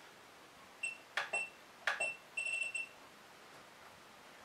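Wanptek TPS605 bench power supply's front panel beeping as its buttons are pressed to set the current limit: single short high beeps, then several in quick succession near the end, with two sharp clicks in between.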